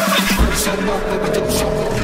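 Electronic dance music at a transition in the mix. The ticking beat stops about half a second in, leaving a deep sustained bass and held synth tones with the high end filtered away, before the kick drum comes back.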